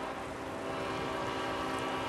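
Distant train running by the tracks: a steady drone with several held tones over a low rumble, unchanging throughout.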